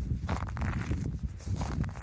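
Wind rumbling on the microphone, with a few footsteps on the shore.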